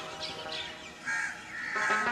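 A crow calling once, about a second in, over soft, steady background music.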